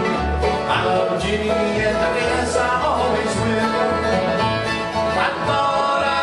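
Bluegrass band playing live, an upright bass plucking a steady pulse of low notes about twice a second under bright plucked-string picking.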